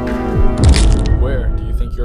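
Background music cuts out with a falling low sweep, then a loud sharp crack with a deep boom hits about half a second in, fading over the next half second.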